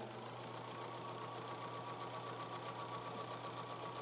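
Domestic electric sewing machine running steadily, stitching pieces of a quilt block, with a fast, even stitch rhythm.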